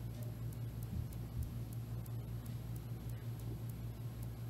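Room tone: a steady low hum with faint, evenly spaced high ticking.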